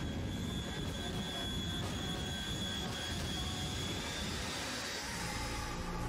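Jet engine of a jet-powered truck running hard, a steady rushing noise with a high, steady whine over it.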